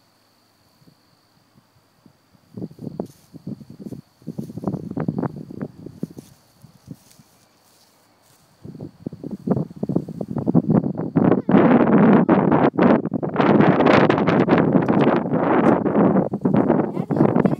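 Wind gusting over the microphone and rustling the grass around it: a couple of short gusts after a quiet start, then loud, continuous buffeting through the second half.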